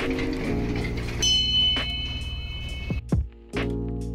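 Background music with a steady beat. A high ringing tone sounds for about two seconds, starting about a second in.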